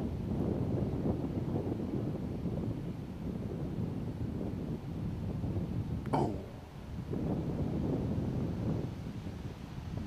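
Strong wind buffeting the microphone: a gusty low rumble that cuts in suddenly at the start and eases briefly about two-thirds of the way through.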